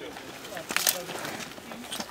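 Men's voices talking in the background while a group works, with a short, sharp rustle or scrape a little before the middle.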